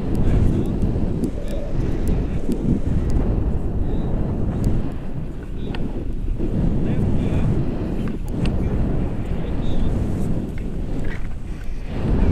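Airflow buffeting a camera microphone on a tandem paraglider in flight: a loud, steady low rumble with scattered faint clicks.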